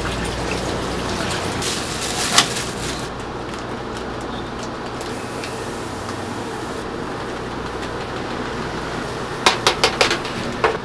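Water running from a hose into a stainless steel tray of raw chicken wings as they are handled, with one sharp knock a couple of seconds in. After that a steady low background hum remains, and a quick run of clicks and knocks comes near the end.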